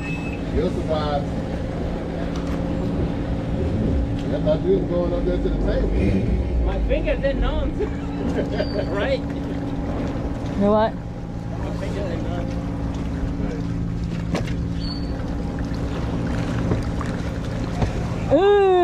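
Jet ski engine idling steadily, with faint voices talking in the background.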